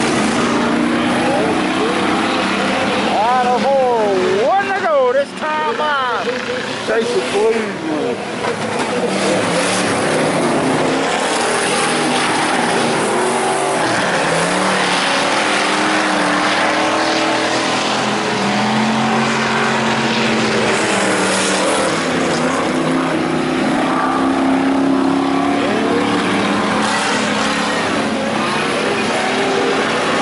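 IMCA Hobby Stock race cars' V8 engines running hard on a dirt oval, their pitch swinging up and down as the cars come off and back onto the throttle through the turns, with a brief dip in loudness about five seconds in.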